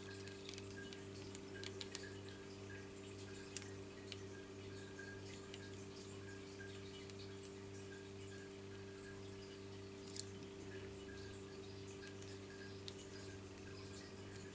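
Faint drips and small ticks of fluid acrylic paint falling from the edge of a tilted canvas onto a plastic sheet, over a steady low hum.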